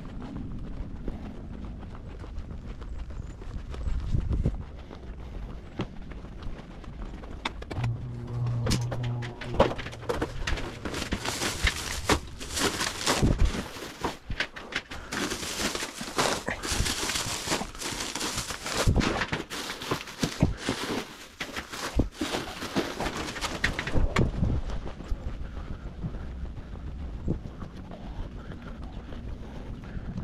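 Footsteps on pavement, then a long stretch of crinkling and knocking from grocery bags and boxed items being handled and lifted out, with quieter footsteps near the end.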